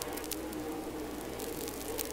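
Faint, even hiss with a low steady hum and a few light crackles near the start: an open microphone picking up distant race-track noise.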